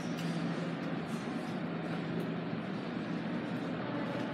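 Steady low rumble with a constant hum, the background noise of an underground subway station.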